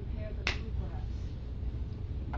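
A single sharp click about half a second in, over a steady low hum and faint, distant speech.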